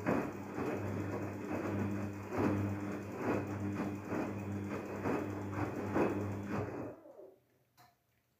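Daewoo DWD-FT1013 front-loading washing machine's drum turning, with a steady motor hum and a rhythmic swish and thud of wet laundry roughly every second. The motor stops about seven seconds in and the sound dies away quickly.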